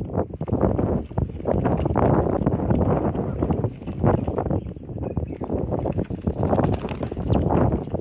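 Wind buffeting the phone's microphone: a loud, gusting rush that keeps rising and falling.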